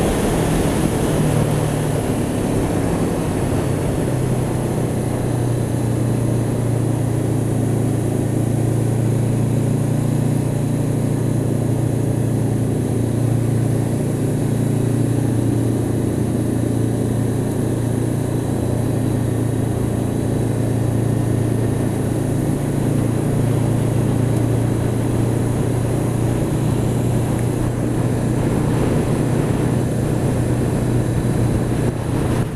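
Honda CB500X's 471 cc parallel-twin engine running steadily under way, its note dipping slightly a second or so in and then holding even, with steady wind and road noise over it.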